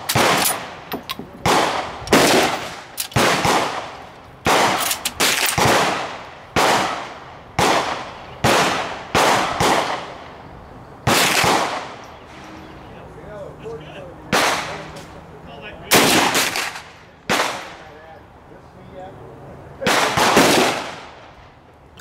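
Rifle shots from several shooters on a firing line, each a sharp crack with a ringing tail. They come about twice a second over the first ten seconds, too fast for one bolt-action rifle, then thin out to single shots every second or two.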